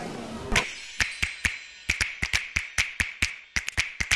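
A run of sharp cartoon pop sound effects, about four a second in an uneven rhythm, starting about half a second in.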